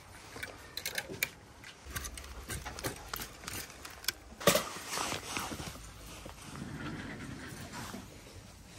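Plastic clothes hangers clicking and scraping along a clothes rail as garments are pushed through by hand, with a sharper clack about four and a half seconds in.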